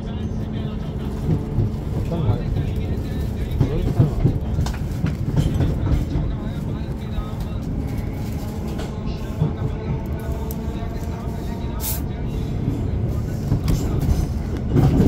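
Inside a Class 455 electric multiple unit on the move: a steady low rumble of wheels and running gear on the track, with a steady hum underneath. There is a sharp click of the wheels near the end.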